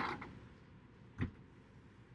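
Pencil drawing a line on tracing paper: a faint scratching, with one short sharp tick about a second in.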